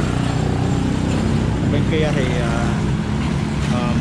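Street traffic, with a motor vehicle engine running steadily nearby.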